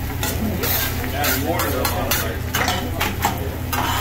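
Metal spatula scraping and tapping on a steel hibachi griddle as fried rice is chopped and turned, in repeated irregular strokes over the sizzle of frying.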